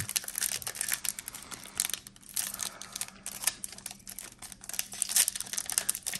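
Foil wrapper of a Panini Illusions trading card pack crinkling and tearing as it is pulled open by hand, in quick irregular crackles.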